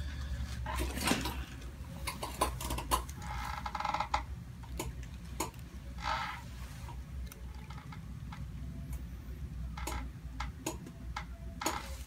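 Scattered small clicks and soft rustles of hands and clothing as a chiropractor cradles and turns a lying patient's head, over a steady low room hum.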